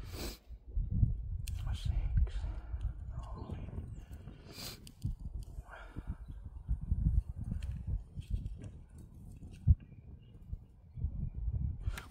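A stack of thin metal-cutting discs being thumbed through by hand and counted, the discs clicking against one another, with quiet muttered counting. Wind rumbles on the microphone, and there is a single sharp low bump about ten seconds in.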